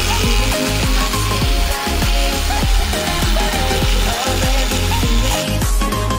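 Background pop music with a beat, over a steady high hiss from a battery-powered Sonic Scrubber brush scrubbing inside an oven, which stops shortly before the end.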